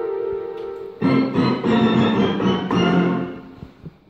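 Homemade keytar synthesizer being played: a held chord fading over the first second, then a switch to a different, brighter sound playing a short phrase of changing notes from about a second in, dying away near the end.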